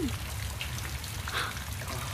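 Radio-drama sound effect of rain, water falling and dripping, over a low steady rumble.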